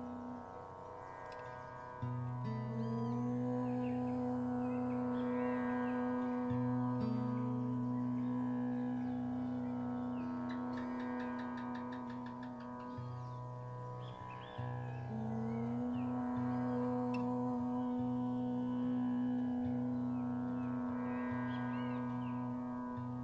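A man's and a woman's voice chant long, held Oms an octave apart over a steady instrumental drone. Each Om is held for several seconds. After pauses for breath, the voices come back in about two seconds in and again about fifteen seconds in.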